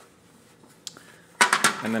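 A single light click of the plastic sprouting tray being handled, just before a second in, followed by speech.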